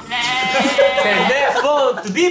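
A young man's voice singing a long, wavering, high-pitched "Blue~", held for almost two seconds.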